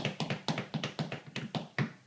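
A quick run of sharp taps or clicks, about five a second, that stops abruptly near the end.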